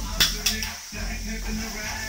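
A glass pan lid clinking twice as it is lifted off a frying pan, over a steady low hum.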